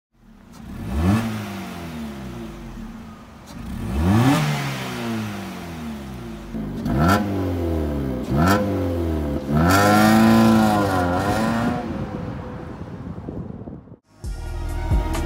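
Exhaust of a Vauxhall Astra H 1.6 SXi with its middle silencer replaced by a Hoffmann straight-through centre pipe, revved while stationary. There are four quick blips, each rising fast and falling back. Then comes a longer held rev with a brief dip, before the engine settles back to idle.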